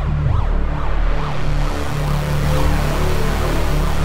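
Electronic music: an electro/synthwave track in its opening bars, with a heavy sustained synth bass under repeated synth tones that glide up and down.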